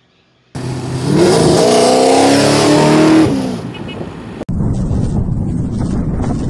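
A loud car engine revving, its pitch rising and then falling, starting about half a second in. It cuts off abruptly after about four seconds into a noisy rumble.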